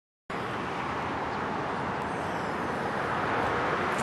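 Steady hiss of highway traffic, cutting in abruptly just after the start.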